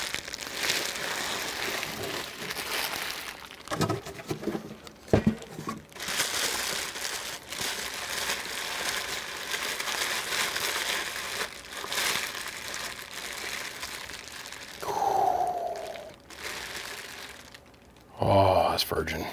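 Plastic bubble wrap being pulled open and crinkled by hand as it is unwrapped from a packed item. There are a couple of sharp knocks about four and five seconds in.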